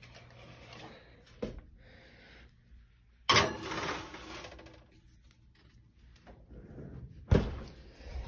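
A metal baking sheet of foil-wrapped ribs scraping onto an oven rack for about a second, a little past three seconds in, then the oven door shutting with a sharp bang near the end.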